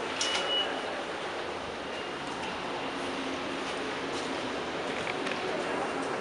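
A floor button on a hydraulic glass elevator's car panel pressed with a click and a short high beep, then the steady hum and rumble of the car running between levels.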